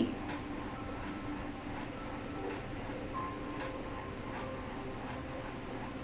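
Quiet background music: soft held notes with a few light, irregular ticks.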